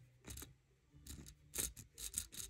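Faint, short scratchy strokes of a friction pen's tip drawing across Osnaburg cloth stretched taut in a wooden embroidery hoop, a few strokes spaced unevenly.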